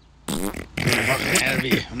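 A short fart noise a little way in, followed by a man's voice speaking.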